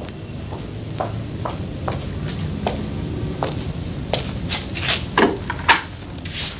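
Broom sweeping a floor: short, scratchy strokes at an uneven pace, a little more than one a second, coming closer together near the end.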